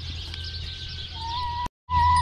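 A hen's soft, drawn-out call on one steady pitch, starting about a second in, over a steady low hum. The sound cuts out for a moment just before the end.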